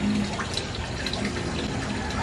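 Water streaming and splashing from a lifted fish net into an aquarium tank, a steady running-water sound.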